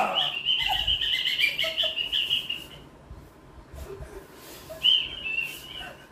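A high, warbling, bird-like whistle blown for nearly three seconds, then again for about a second near the end.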